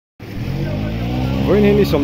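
An engine running at a steady pitch, with a person's voice starting to speak about one and a half seconds in.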